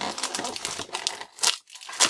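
Foil trading-card pack crinkling and tearing as hands pull hard at a stubborn seal, with a sharp crackle about one and a half seconds in.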